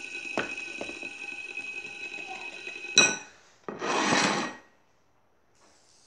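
Fidget spinner spinning on a plate, a steady ringing hum of several high tones. About three seconds in comes a sharp clank, then a brief scraping rub.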